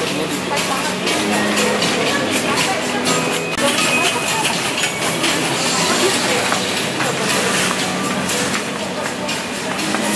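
Busy supermarket: a shopping cart rattling as it is pushed along the aisle, over music and indistinct voices.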